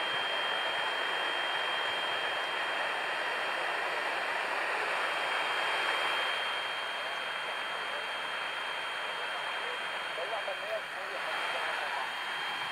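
Eton G6 Aviator portable shortwave receiver tuned to an SSB channel on 8310 kHz, its speaker giving a steady rush of band noise with a constant high-pitched whistle over it, between transmissions. A faint, wavering voice comes through the noise near the end.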